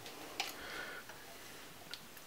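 A metal spoon scooping peanut butter from a glass jar: faint scraping, with two light clicks of the spoon against the glass, one about half a second in and one near the end.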